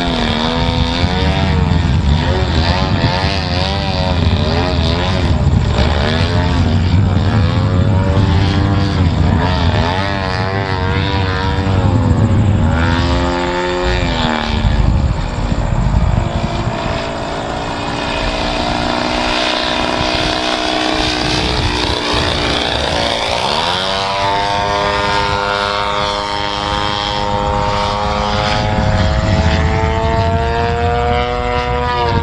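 The propeller engine of a large radio-controlled model airplane drones steadily in flight, its pitch repeatedly rising and falling as the plane manoeuvres and passes. About three-quarters of the way through, the pitch climbs sharply, then holds at a higher tone.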